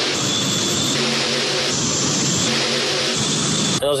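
Multi-engine pulling tractor with several V8 engines running flat out under load during a pull, a loud steady engine noise that cuts off abruptly near the end.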